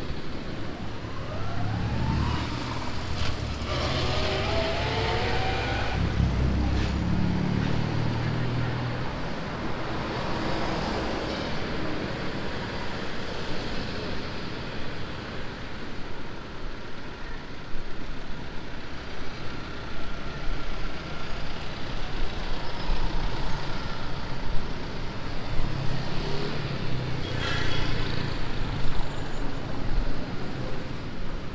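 Street traffic: a motor vehicle passes close by early on, its engine rising in pitch as it pulls away, then a steadier traffic noise, with another vehicle passing near the end.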